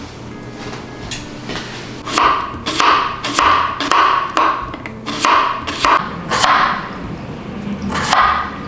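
Chef's knife slicing a cucumber on a wooden cutting board: a run of sharp knocks of the blade striking the board, about two a second, starting about two seconds in.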